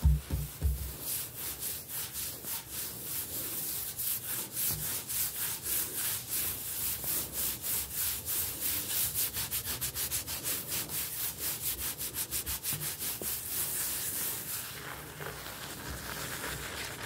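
Fingertips and nails scratching rapidly back and forth on a hard kitchen countertop, a fast run of dry, crinkly strokes that quickens and then stops shortly before the end. A few low thumps on the counter come in the first second.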